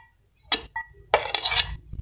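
A metal spoon scraping chopped green capsicum off a plate into a glass bowl, with a sharp clink about half a second in and a longer scrape in the second half.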